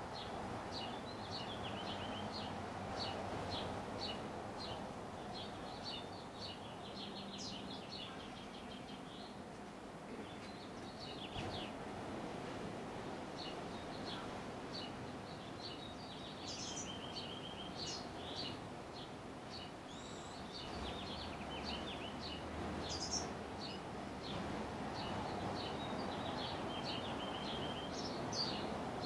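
Small birds chirping and trilling in the background, many short high calls scattered throughout, over a steady low hum of ambient noise.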